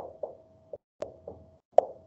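Dry-erase marker tapping and stroking on a whiteboard as letters and bonds are written: short sharp taps at the start, about a second in and near the end, the last the loudest.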